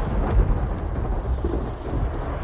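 Movie trailer sound design: a deep, steady low rumble with a crackling, static-like haze over it.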